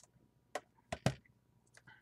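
Steelbook Blu-ray cases in shrink-wrap being handled and swapped, giving a few sharp clicks and taps, three of them close together around the middle, with fainter ticks near the end.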